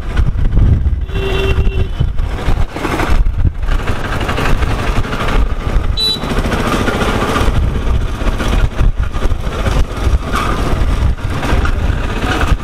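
Motorcycle riding through town traffic: its engine running under heavy wind buffeting on the microphone. A vehicle horn sounds for about a second, a second in, and a short high beep comes about six seconds in.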